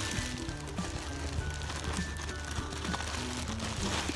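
Background music: a line of short held notes stepping between pitches.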